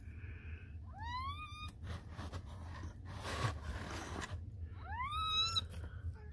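Newborn kittens crying: two high mews, each rising sharply in pitch and then holding, about a second in and again near the end. These are the cries of very young kittens that, as the one filming sees it, have been left without their mother.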